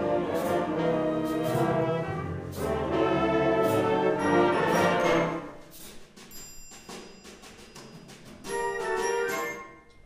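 Concert band playing sustained brass and woodwind chords, loud for about five seconds, then a quieter stretch with sparse high notes, then a short loud swell near the end.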